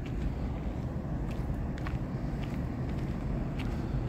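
Steady low rumble of outdoor background noise, with a few faint footsteps on asphalt.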